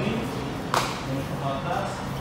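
A single short, sharp smack about three-quarters of a second in, over the low hum and faint voices of a training hall.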